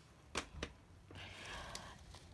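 Faint handling noise: two light clicks a quarter of a second apart, then a soft rustle lasting under a second.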